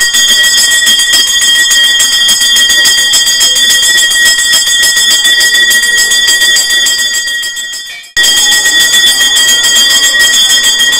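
Temple bell rung rapidly and without pause, a loud, ringing metallic clangour. It sags and breaks off for a moment about eight seconds in, then resumes at full level.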